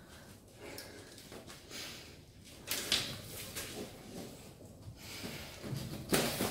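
A bundle of bamboo sticks scraping, rattling and knocking as it is forced into the strap of a heavy punching bag: faint, scattered rustles and clicks, the loudest a little before halfway.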